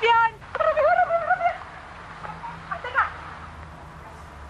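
A high-pitched voice calling out from a home video playing on a television, for about a second and a half, then faint room sound with a short rising call near the end.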